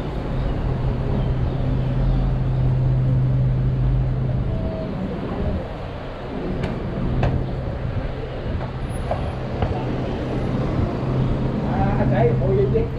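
Street traffic noise: a motor vehicle engine running with a steady low drone that fades for a couple of seconds about midway and then returns, over a continuous hiss of roadway noise.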